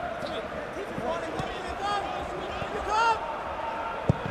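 On-pitch sound of a football match played in an empty stadium: players shouting and calling to one another, the loudest call about three seconds in, with a few dull thuds of the ball being kicked.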